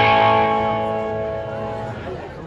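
A single chord strummed on an amplified box-bodied guitar, ringing out and slowly fading.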